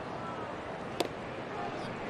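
Steady ballpark crowd murmur, with one sharp pop about a second in: a pitched baseball, an 85.7 mph cutter, smacking into the catcher's mitt on a pitch the batter takes.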